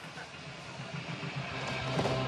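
Skateboard wheels rolling on a concrete floor, a steady rumble that grows louder toward the end.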